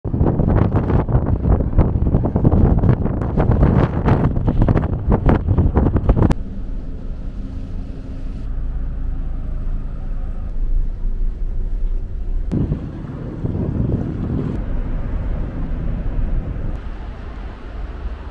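Wind buffeting the microphone on the open deck of a car ferry under way, loud and gusty, cutting off abruptly about six seconds in. Then the ship's steady low engine hum inside the passenger lounge, with a louder rush of noise for a couple of seconds about halfway through.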